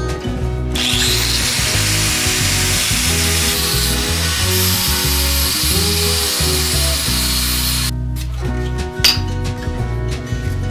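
Angle grinder running against a steel billet clamped in a vise, a loud steady grinding hiss that starts about a second in and stops abruptly near the end, over background music.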